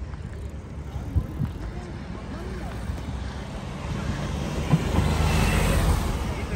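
A car driving past close by on the road, its tyre and engine noise building to a peak near the end. Faint voices of passers-by are heard in the first half.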